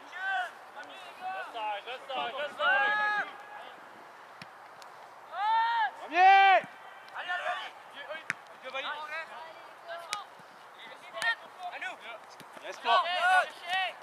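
Shouts and calls from young soccer players and people at the field: short, high-pitched cries scattered throughout, the loudest about six seconds in. A few sharp taps are heard between them.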